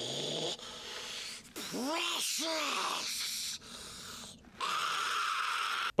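Gollum's raspy, hissing voice in a film clip, heard in several short snatches of strained, croaking vocalising. About two seconds in come two short cries that rise and fall in pitch.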